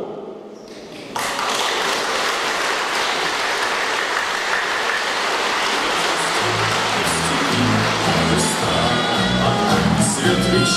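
Audience applauding in a large hall; the clapping breaks out suddenly about a second in and holds steady. About six and a half seconds in, music with low sustained notes begins underneath the applause.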